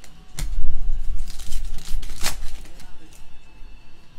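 Trading cards being flipped and slid across one another in the hand: papery rustling, with a sharp snap about half a second in and a louder one just after two seconds.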